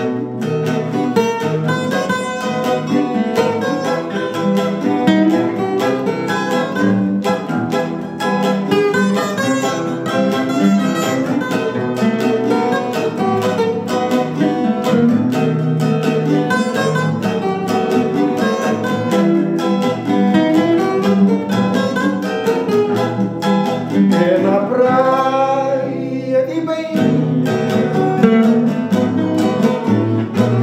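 Acoustic guitars and a cavaquinho playing a slow Cape Verdean morna. A man's voice comes in singing near the end.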